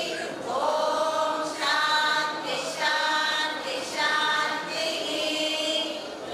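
A large group of women singing together in unison, in phrases of long held notes about a second each with short breaths between.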